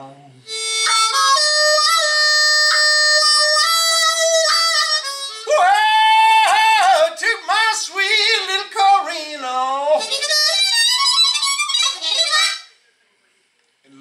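Blues harmonica played solo, cupped in the hands: long held notes, then bent, sliding notes and fast wavering runs. It stops about a second before the end, leaving a brief silence.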